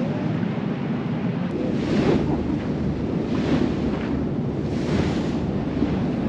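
Wind buffeting the microphone over the wash of sea water around a moving boat, swelling in whooshes about every second and a half, with a low rumble underneath.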